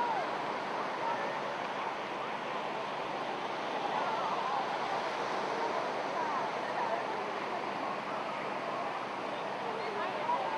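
Small surf washing steadily onto the shore, with faint indistinct voices of people and children on the beach.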